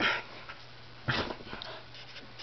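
Corgi nosing and digging at couch cushions: two short, rough bursts, one right at the start and another about a second in.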